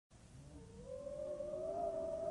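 A sustained tone, several pitches together, fades in, slides slowly upward in pitch and then holds steady.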